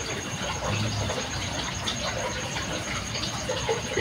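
Steady rushing background noise with no speech, like running water.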